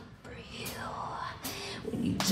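Quiet break in a live heavy metal song: whispering into the vocal microphone, with a hissing sound that sweeps down in pitch and back up.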